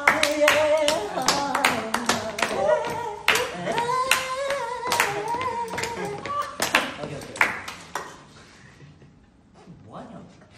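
Several young men clapping their hands to a beat while singing a tune together; the claps and singing stop about eight seconds in.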